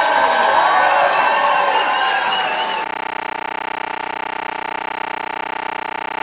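Concert audience applauding and cheering, with voices calling out. About three seconds in it cuts off abruptly and a steady buzzing hum with several even tones takes over.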